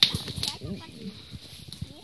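Quiet rustling and crackling of dry fallen leaves as goats step and forage, with small irregular clicks and one sharp click at the very start.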